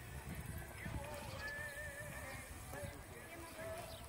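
A pony cantering on a sand arena, its hooves thudding in an uneven rhythm, with a voice and music in the background.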